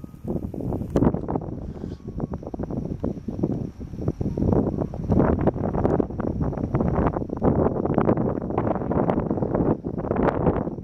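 Wind buffeting the microphone in irregular, rumbling gusts.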